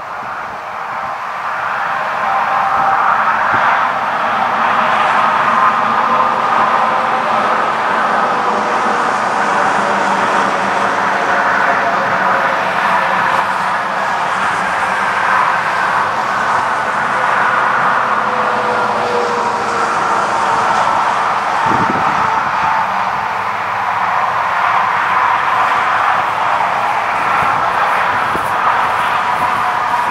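Federal Signal Model 2 outdoor warning siren sounding its steady test wail. It grows louder over the first few seconds, then holds with slow, gentle swells in loudness.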